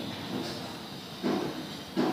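Background hiss with a faint steady high-pitched whine, and a short, faint voice sound a little past the middle.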